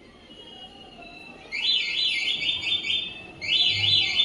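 A small bird chirping: two bursts of fast, evenly repeated high chirps, the second near the end.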